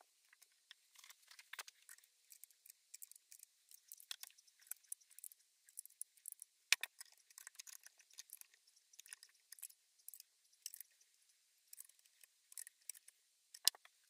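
Quiet, irregular light clicking and scraping of small metal guitar tuner parts (nuts, washers, tuning machines) being handled and fitted by hand to a wooden headstock. A sharper click comes about halfway through and another just before the end.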